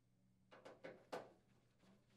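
Near silence, with a few faint clicks between about half a second and a second and a half in: a screwdriver and screws being worked on the microwave's sheet-metal top access panel.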